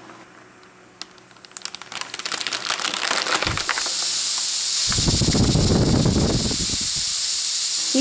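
A flameless heater pouch reacting with water inside a sealed MealSpec heater bag. Crackling and fizzing start about a second and a half in and build into a steady, loud hiss of very hot steam venting from the top of the bag and its steam holes, with a low rumble partway through.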